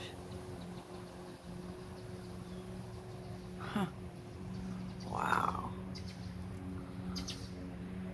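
Birds calling over a steady low hum: a falling call about four seconds in, a louder call a second later, and short high chirps near the end.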